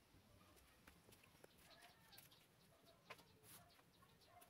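Near silence, with faint short animal calls in the background and a couple of light clicks.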